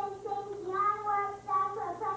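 A child singing alone in a high voice, a string of held notes.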